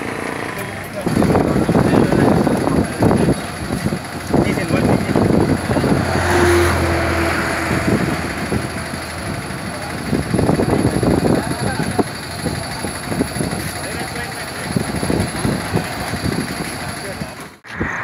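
Several people talking in the open, with vehicle noise from the road behind them.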